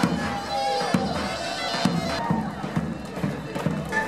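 Folk parade music: a large bass drum beating about twice a second under a reedy wind instrument holding a melody, with crowd noise around it.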